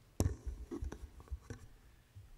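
Handling noise on a wooden lectern close to a microphone: one sharp knock about a quarter second in, then a run of lighter knocks and dull bumps over the next second or so as things are moved about on it.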